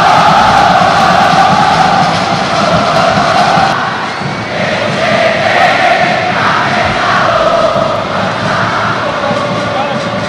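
A large stadium crowd of football supporters chanting and singing in unison, a massed wall of voices. The chant shifts to a different line about four seconds in.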